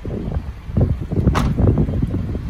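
Mitsubishi Outlander's tailgate being shut, with a sharp slam about one and a half seconds in, over wind buffeting the microphone.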